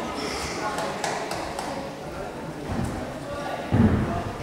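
Faint voices echoing in a large gym hall, with a few light taps. A dull, heavy thud near the end as a gymnast mounts the parallel bars and takes his weight on them.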